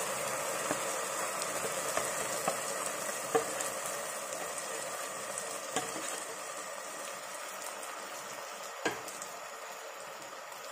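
Ground chilli paste sizzling as it goes into hot mustard oil with fried spices in a pan, the sizzle slowly dying down, broken by a few sharp clicks.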